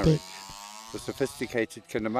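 The small electric motor of a Proxxon BSG 220 drill-bit sharpener running with a steady buzz while a twist drill bit is held against its grinding wheel.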